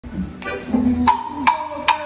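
A band starting to play: piano accordion notes with five sharp percussive strikes spread through the two seconds.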